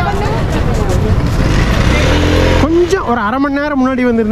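A loud rushing noise that cuts off suddenly about two and a half seconds in, then a person's voice singing long, wavering notes without clear words.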